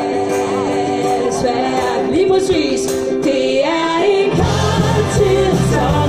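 A live band and its audience singing a song together, the voices held on long, sliding notes over light accompaniment; about four seconds in, the bass and drums come in fully.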